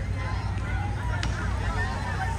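Young players' voices calling and shouting across a football pitch, with a single sharp knock about a second in, over a steady low rumble.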